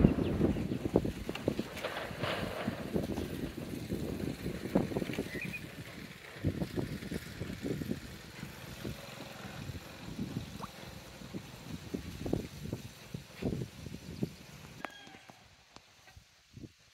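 Outdoor background sound with scattered, irregular knocks and taps, growing quieter toward the end.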